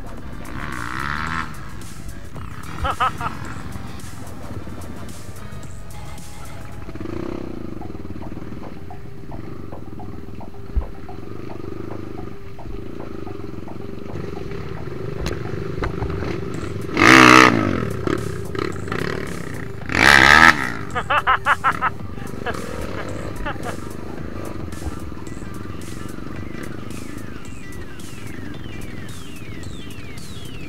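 Trail motorcycle engines running steadily at low speed, heard under background music. Just past halfway there are two loud bursts a few seconds apart, the second followed by a quick run of pulses.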